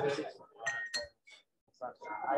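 Indistinct voices of people talking among the tables, with tableware clinking twice, short high rings just under a second in. The sound then drops almost to nothing for a moment near the end.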